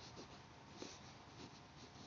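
Faint scratching of a pen writing on notebook paper, in short strokes about every half second.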